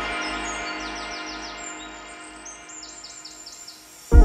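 Background music fading out, with birds chirping over it in two quick runs of about five or six high, falling chirps each, one early and one past the middle.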